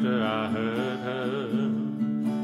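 Two acoustic guitars strummed in a country song, with a voice holding a long, wavering sung note over a steady low drone.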